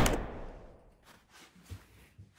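Vehicle cabin noise fading away over about half a second into near silence, with a couple of faint taps late on.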